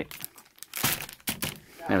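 Soft plastic packs of baby wipes crinkling as they are handled and set down, a few brief sharp rustles.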